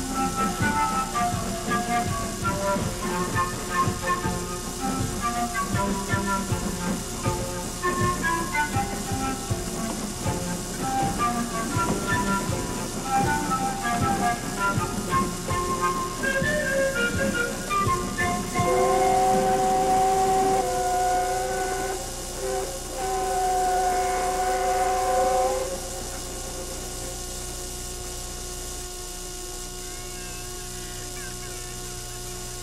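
Music of quick falling runs of notes plays for the first two-thirds. It gives way to two long, steady chord blasts from the train's locomotive whistle, with a short break between them. A quieter steady hum follows.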